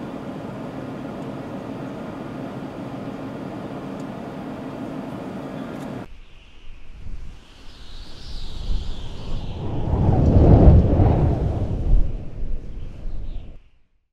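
Steady hum of a vehicle cabin for about six seconds, then it cuts off and an animated-logo sound effect begins: a sweeping whoosh over a deep rumble that builds to a loud peak and fades away near the end.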